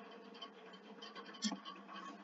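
Faint scratchy rustling over a low steady hum, with one soft click about one and a half seconds in.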